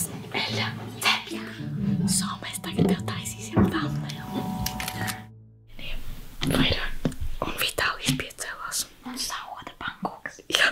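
Whispered voices over background music, with a brief silent break about five seconds in.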